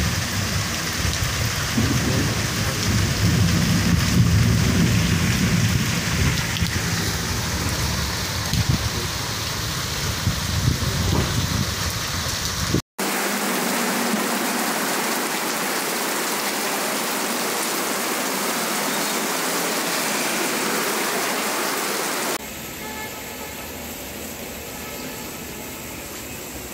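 Heavy rain pouring down on floodwater running through a lane, with a deep low rumble through the first half. After a sudden cut about halfway through, a steady hiss of heavy rain on a street follows, dropping to a quieter hiss a few seconds before the end.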